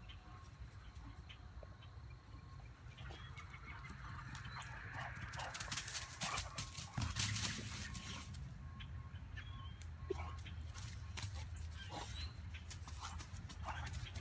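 Faint rustling and crackling of steps through grass and dry leaves, coming in clusters of short clicks, with a dog nosing at a tennis ball on the ground.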